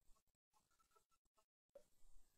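Near silence, with a few faint taps of a stylus writing on a tablet.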